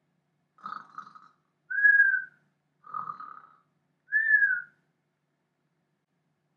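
A man's mock cartoon snore, done twice: each time a rasping snore on the in-breath, then a short whistle on the out-breath that rises and falls.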